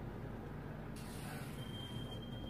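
Pen scratching as it is drawn along a ruler across brown pattern paper, starting about a second in, over a steady low background rumble.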